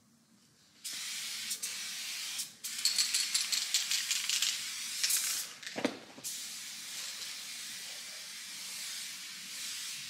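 Aerosol spray paint can hissing in several sprays as lines go onto a tiled wall. The first spray begins about a second in. A louder, uneven spray follows after a short break, then a knock, then a steadier, quieter hiss.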